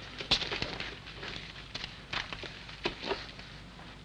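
A few short, sharp clinks and knocks, the strongest about a quarter second in and a cluster between two and three seconds in: spoons used as tyre levers working against a bicycle wheel rim.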